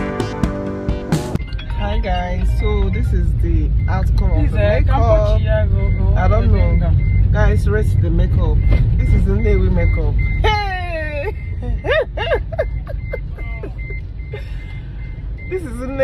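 Car cabin sound: a steady low engine and road rumble, with a rapid electronic beep repeating at one pitch through most of it, and voices talking. A short stretch of piano music ends about a second and a half in.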